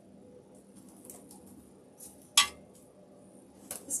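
Hands handling artificial greenery stems and a grapevine wreath on a worktable: a few faint ticks and rustles, with one sharp click about two and a half seconds in.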